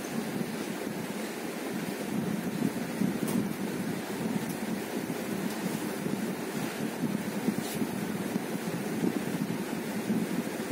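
Steady rushing background noise with no speech, a little uneven in level, with a couple of faint brief clicks.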